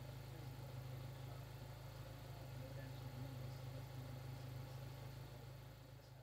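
Mazda MX-5's engine idling, a steady low hum that fades out at the end.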